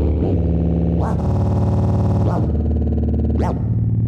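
Electronic music: a loud, low sustained drone of stacked steady tones, crossed four times by short sweeps that rise and fall in pitch.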